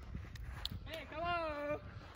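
A man's voice giving one drawn-out, wavering wordless call about a second in, preceded by a few faint scuffs like footsteps on a sandy court.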